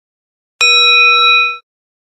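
A single bell-like ding sound effect for a title card, starting sharply about half a second in, ringing steadily for about a second, then fading out quickly.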